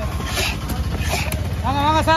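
Knife blade drawn across a wooden chopping block in a few short scraping strokes, over a steady low rumble. Near the end a voice calls out, rising in pitch.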